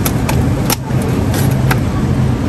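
A plastic clamshell food package clicking and crackling several times as it is handled and set back on a shelf, over a steady low hum.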